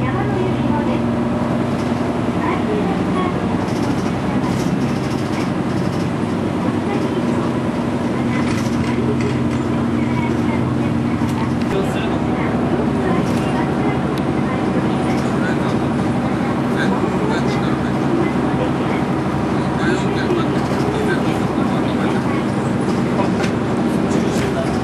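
Bus interior noise while driving: the diesel engine's steady drone with road and tyre noise. About halfway through, the engine note changes once.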